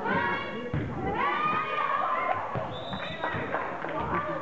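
High voices yelling twice during a volleyball rally in a gym, each shout drawn out for about a second, with a few sharp thuds of the ball being hit.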